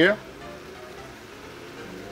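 Shrimp in butter and chicken frying in pans on a gas stove: a steady, soft sizzle.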